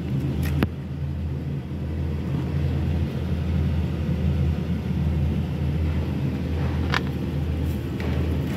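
Steady low hum of an engine running, with a couple of faint clicks.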